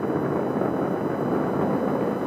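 Falcon 9 rocket's nine Merlin engines during ascent, heard as a steady, even rumbling roar.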